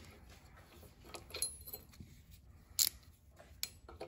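A few faint metal clicks and taps of a socket and ratchet being fitted onto an oxygen sensor, the sharpest click about three seconds in.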